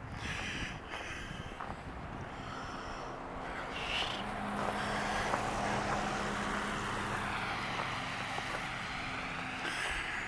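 A vehicle driving along a wet, slushy street. Its engine and tyre noise grow louder from about four seconds in and then hold steady.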